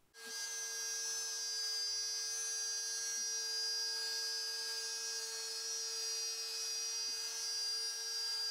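X-Carve CNC router with a compact trim router spindle running steadily, its 1/8-inch downcut fishtail bit cutting plywood. It is a steady high whine over a hiss, setting in abruptly at the start.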